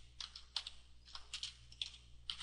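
Computer keyboard being typed on: about six separate keystroke clicks at uneven spacing as a short word is entered.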